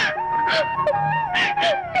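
A woman crying with whimpering, wailing sobs over soft background music that holds long, slowly falling notes.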